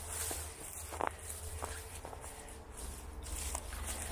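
Footsteps through dry leaf litter and brush, with a few sharp clicks spaced over the seconds, over a steady low rumble of wind on the microphone.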